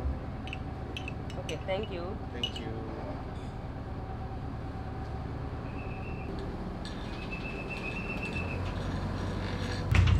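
A metal spoon clinking against a ceramic cup as a drink is stirred, several light clinks in the first few seconds, over a steady low hum.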